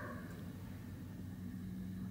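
Quiet outdoor ambience: a faint, steady background hiss with no distinct sounds standing out.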